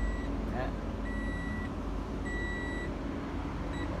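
A high electronic warning beeper sounding about once a second, each beep up to about half a second long, with two shorter beeps near the end, over a low steady rumble.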